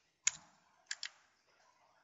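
Three faint clicks on a computer keyboard: one sharp keystroke, then two quick ones close together a little over half a second later.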